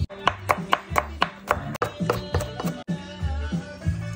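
A knife chopping serrano peppers on a wooden cutting board in quick, even strokes, about five a second, through the first two seconds, over background music with a steady beat.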